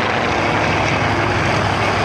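Consolidated PBY Catalina's twin Pratt & Whitney R-1830 Twin Wasp radial engines running at low power as it taxis, a steady drone with propeller noise.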